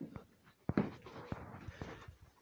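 Several scattered knocks and clicks, the loudest just under a second in, with some light rustling near the end.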